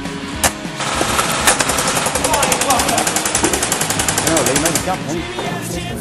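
Rapid, evenly spaced run of sharp cracks lasting about three seconds, starting a little over a second in: an airsoft gun firing on full auto. Rock background music plays under it.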